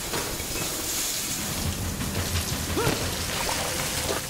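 Water spraying and pouring down from burst pipes, a steady rushing hiss like a heavy downpour.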